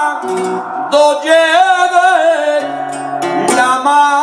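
Male flamenco singer singing a seguiriya in long, wavering, ornamented lines, accompanied by a flamenco guitar. The voice eases off briefly and swells again about a second in, and the guitar strikes a sharp strum near the end.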